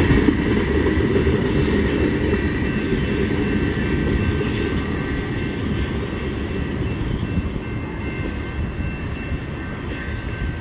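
Rear cars of a long mixed freight train rolling past on the rails and receding, a steady rumble that slowly fades. A few thin, steady high tones ring over the rumble.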